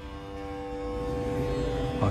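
Indian instrumental music holding steady drone notes, with a low rumble of background noise coming up about a second in.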